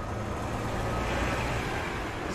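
City street traffic: a steady rumble and hiss of passing vehicles that grows slightly louder.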